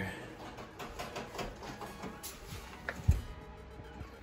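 Pet hamster gnawing on the wire bars of its cage: faint, irregular clicking, with a single thump about three seconds in.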